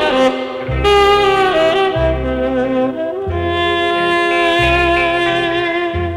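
Saxophone recording of long held notes over a steady low accompaniment, played back from tape on a Grundig TK 47 stereo reel-to-reel recorder and heard straight from its line output.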